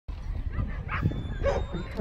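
A dog barking twice, short sharp barks about a second apart, with wind rumbling on the microphone.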